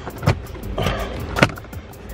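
Plastic dashboard trim panel being pulled loose: two sharp snaps as its retaining clips pop, the louder about a second and a half in, with a brief scrape of plastic between them.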